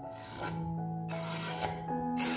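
Diced boiled potato scraped off a wooden cutting board into a glass bowl: a long rasping scrape, then a shorter one, over steady background music.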